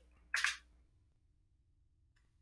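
A short breath from the narrator about a third of a second in, then quiet room tone.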